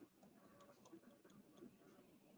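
Near silence: room tone with a few faint, irregular clicks.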